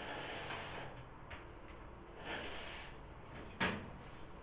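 Classroom room noise: two brief soft rustles and a single sharp knock near the end, like something set down or a drawer or door shutting.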